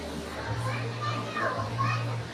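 Background voices in a crowded hall, with a high-pitched voice standing out from about half a second in, over a steady low hum.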